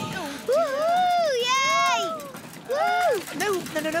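Cartoon characters' voices crying out in wordless exclamations, their pitch swooping up and down. There is a longer outburst with a high-pitched cry in the middle, then a shorter one about three seconds in.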